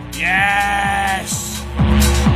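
Techno track in a DJ mix: the kick drum drops out and a single pitched note slides down briefly, then holds for about a second. The full beat comes back near the end.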